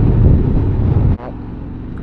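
Yamaha Ténéré 700 parallel-twin motorcycle engine running under way, heard from the rider's position with a heavy rumble of wind on the microphone. About a second in the sound drops suddenly to a quieter, steady engine hum at low speed.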